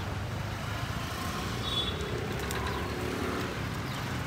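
Road traffic on the street: a steady low rumble of passing cars.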